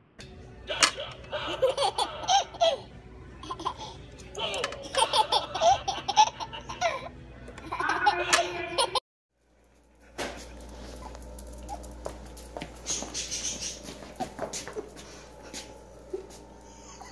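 A baby laughing hard in repeated bursts for about nine seconds. After a brief gap comes a quieter stretch with a steady low hum and small clicks.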